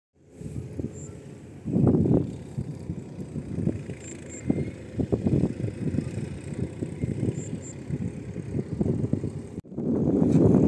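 Wind buffeting the microphone in an open field: an irregular low rumble that swells in gusts, loudest about two seconds in, with a few faint, brief high chirps.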